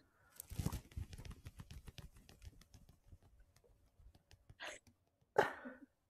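Quiet, stifled laughter: a string of quick breathy pulses that fades away over two or three seconds, then two short breathy bursts near the end.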